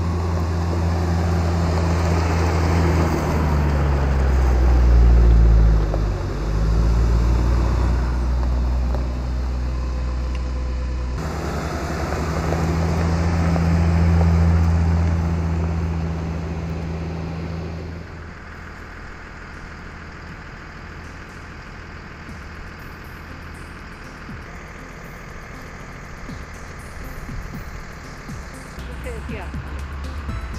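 Diesel engines of a military vehicle convoy led by a URO VAMTAC 4x4 driving along a gravel track. The engines run loudly, and their pitch shifts as a vehicle passes close about six seconds in. A second close pass swells around fourteen seconds, then the engine noise drops to a low steady rumble about eighteen seconds in.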